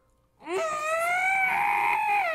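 A man's long, strained, high-pitched vocal whine, starting about half a second in, rising slightly and then held, like a "constipated car engine": a groan of frustration at failing to recall a lyric.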